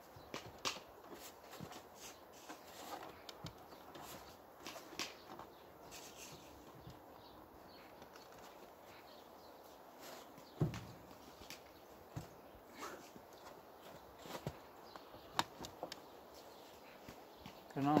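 Faint handling noises around a tin-roofed beehive: light clicks and knocks, with one duller thump about halfway through, and footsteps in snow near the end.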